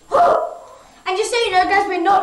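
A short, sharp yelp just after the start, then a high-pitched voice calling out from about a second in.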